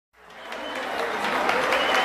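Crowd applause fading in from silence and growing steadily louder, with a faint high tone above it, opening the intro music.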